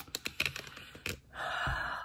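A quick run of light clicks and taps, then a breathy intake or sigh lasting about half a second near the end.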